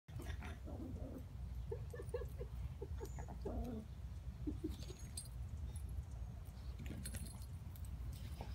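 Faint dog play sounds: a run of short, soft yips about two seconds in, then a falling whine or growl and a few more yips, over a steady low rumble.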